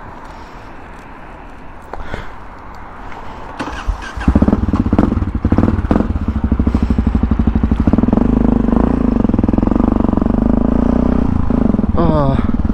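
Supermoto motorcycle engine ticking over quietly, with a few light clicks. About four seconds in it pulls away sharply and the revs climb, then it settles into a steady run as the bike rides on.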